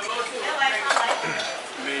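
Crockery and cutlery clinking, with a few sharp clinks about half a second to a second in, over the chatter of other people talking in a restaurant.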